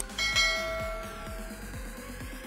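A short click, then a single bell chime that rings and fades over about a second and a half: the sound effect of a YouTube subscribe-and-bell button animation. Background electronic music with a steady beat plays underneath.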